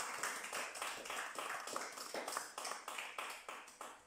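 A small audience applauding by hand, the clapping thinning out and dying away near the end.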